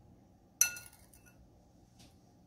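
A metal spoon gives a single sharp clink about half a second in, ringing briefly, followed by a couple of faint ticks.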